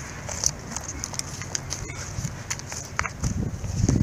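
Hands pressing and smoothing loose potting soil in an aluminium foil tray, making scattered soft crackles and light taps, with a few duller thumps near the end. A low rumble of wind on the microphone runs underneath.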